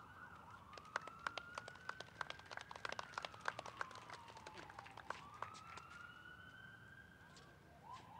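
Scattered, faint hand claps from a small audience, thinning out after about five seconds. Under them a distant emergency-vehicle siren wails slowly, rising, falling, then rising again.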